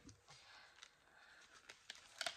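Near silence, with a few faint clicks and light rustles of a paper card being handled.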